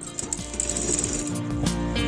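Domestic straight-stitch sewing machine stitching a sleeve seam onto a blouse, its clicking heard under background music.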